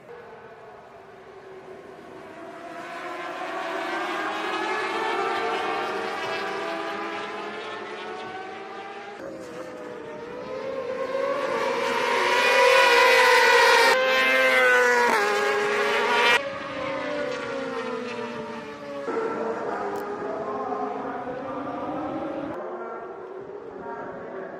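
Several racing motorcycles at full race speed, their engine notes rising and falling in pitch as they pass. The sound swells and fades with each pass, loudest in the middle, and changes abruptly at several edit cuts.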